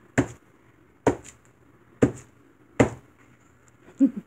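A clear acrylic stamp block being pressed down onto paper on a craft mat, four short sharp knocks about a second apart, as a grid stamp is printed repeatedly across the page.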